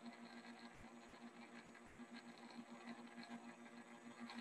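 Near silence: faint room tone with a faint low steady hum.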